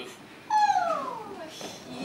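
A woman's high theatrical wail that begins about half a second in and slides steadily down in pitch for about a second.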